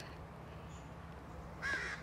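A bird gives a harsh, caw-like call near the end, over a low steady background.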